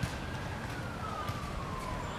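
A siren wailing: a single tone that slowly rises and then falls, over steady street noise.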